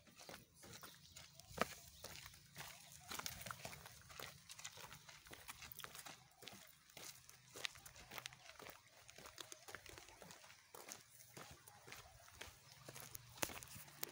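Faint, irregular footsteps and rustling of someone walking on the ground, a scatter of small clicks, with a sharper click about a second and a half in and another near the end.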